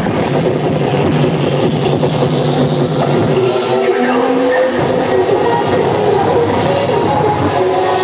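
Loud cheerdance music mix played over a sound system, with a crowd's noise underneath; the bass drops out about three and a half seconds in and a rising sweep follows.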